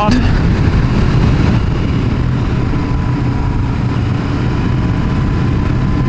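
Sport motorcycle engine running steadily at cruising speed, heard with wind rushing over the helmet-mounted microphone.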